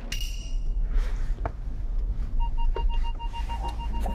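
Electronic beeping: a rapid string of short, high beeps starts about two and a half seconds in, over a steady low rumble. A brief bright tone sounds right at the start.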